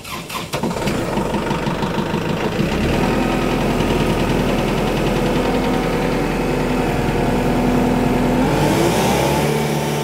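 An engine starts up and runs steadily, its pitch rising near the end.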